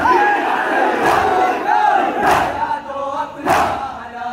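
Crowd of mourners performing matam: many hands striking chests together in unison, three strikes about 1.2 seconds apart, with men's voices chanting a noha between the strikes.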